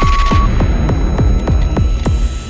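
Countdown-timer sound effect: a long electronic beep at zero that stops about half a second in, over a run of deep thuds falling in pitch, about four a second, with a burst of noise right at the end.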